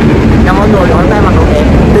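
Steady low rumble of city street traffic, with a man's voice speaking briefly about half a second in.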